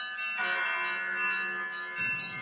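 A bell-like chime sounds about half a second in and rings on steadily, marking the break between two readings.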